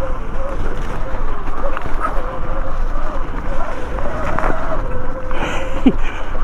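Sur-Ron Light Bee X electric dirt bike's motor whining, its pitch wavering up and down with speed, over the rumble of knobbly tyres rolling through leaf litter on a rough trail, with a couple of knocks from bumps.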